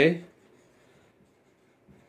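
A man's last spoken word trails off just at the start, then a marker writing faintly on a whiteboard.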